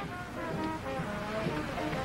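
Quiet background music score of held low notes that shift slowly in pitch, sounding under a pause in the dialogue.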